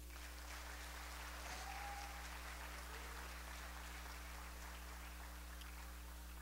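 Congregation applauding, a faint, steady patter of clapping that lasts for several seconds.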